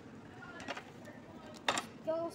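Restaurant background chatter, with one short, sharp clink of tableware near the end.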